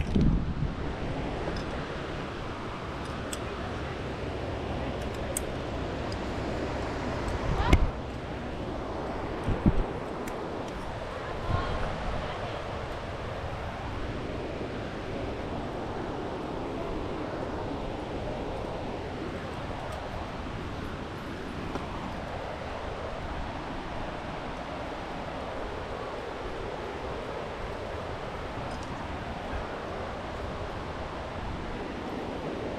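Steady wind noise on an action camera's microphone, with a few short knocks and scuffs about 8, 10 and 12 seconds in.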